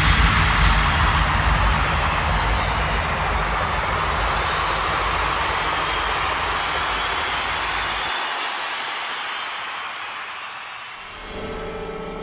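A wash of noise in the soundtrack after the music drops out, opening with a falling sweep and fading slowly; the deep rumble under it cuts off about eight seconds in, and a quiet, dark tone comes in near the end.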